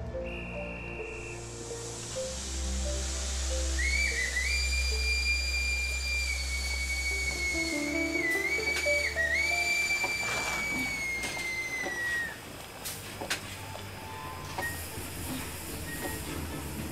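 Steam locomotive whistle blowing one long note of about eight seconds, with two short dips near the middle and sagging slightly in pitch as it ends, over a steady hiss of steam. Background music plays throughout.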